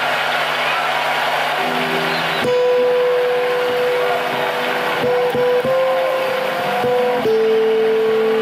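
Acoustic guitar playing a slow single-note melody, each note plucked and held, over a hiss that stops abruptly about two and a half seconds in.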